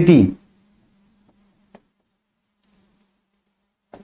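A spoken word trails off, then near silence with a faint, steady low hum and a single faint click a little before the middle.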